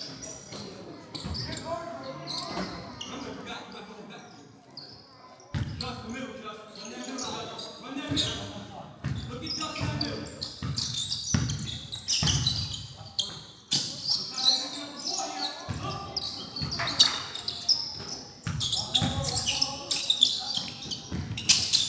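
Basketball bouncing on a hardwood gym floor as it is dribbled, each bounce a sharp thud with hall echo. The bounces get louder and more frequent about five or six seconds in.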